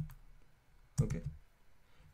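A single sharp click of a computer keyboard key about a second in, probably the Enter press that confirms a new file. Typing clatter tails off at the very start.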